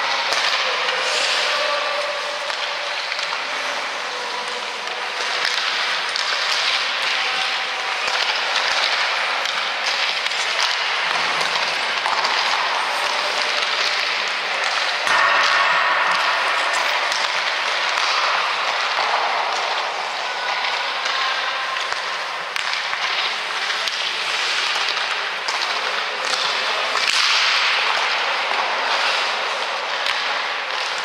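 Ice-rink practice sounds: skate blades scraping and carving the ice in a steady hiss, with frequent short, sharp clacks of sticks and pucks echoing around the arena.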